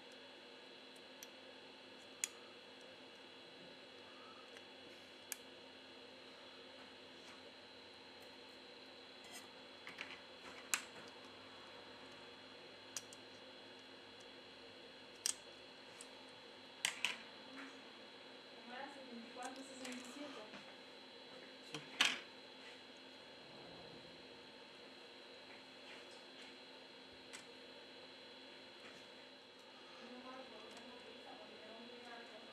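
Sparse light clicks and taps from the phone's motherboard and small parts being handled, over a steady faint hum, with one sharper click about three-quarters of the way through.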